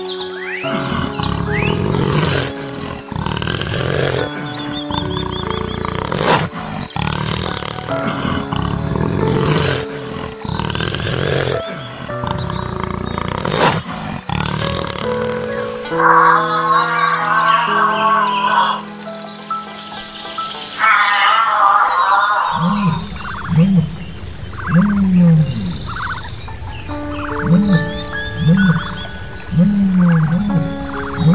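Background music with animal calls laid over it: a loud roar-like call repeated about every two seconds for the first half, then two warbling passages, then a run of short low calls about once a second near the end.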